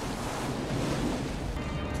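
Ocean surf breaking and churning over a surfer, a steady rush of white water.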